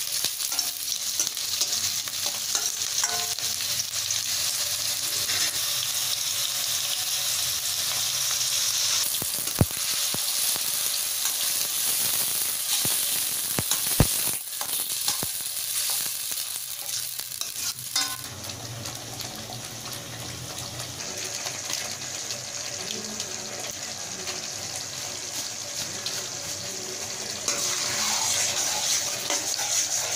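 Onions and green capsicum sizzling as they are stir-fried in a steel kadai, with a metal spatula stirring and twice knocking sharply against the pan. About 18 seconds in the sizzle drops to a quieter hiss as a thick gravy is stirred in the pan.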